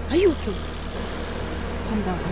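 Short bursts of spoken voice, one just after the start and one near the end, over a steady low hum.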